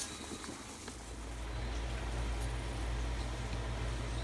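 Steady noise from a pot of spaghetti at the boil, joined about a second in by a low steady hum.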